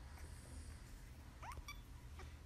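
A playing kitten gives one short, faint mew that rises in pitch, about one and a half seconds in, over a low steady hum.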